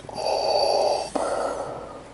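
A man breathing loudly close to the microphone through a plastic face mask: a long breath of about a second, then a shorter, weaker one, fading near the end.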